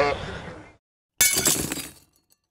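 A loud glass-shattering sound effect crashes in about a second in, followed by scattered tinkling shards. Before it, a person's voice and outdoor noise fade out, then there is a short gap of silence.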